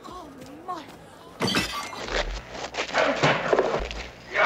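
Film fight-scene sound: wavering voices, then a sharp, loud blow about a second and a half in, followed by a dense scuffle of thumps, crashes and grunting voices.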